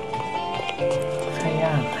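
Footsteps clicking on a hard walkway over the anime's background music.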